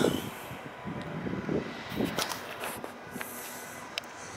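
Low, steady rumble of city traffic in the background, with a few faint clicks.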